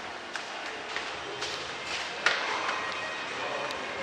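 Knocks and clicks from walking with a handheld camera, roughly every half second, with one sharper click about halfway through, over the room noise of a hotel hall.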